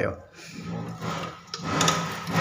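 A few sharp metallic clicks near the end as the side handle of an old fused safety switch is worked to cut off the power, over a low voice.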